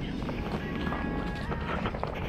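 Footsteps on a dirt trail and the rattling and tyre noise of a road bike being pushed along, picked up by a camera on its handlebars.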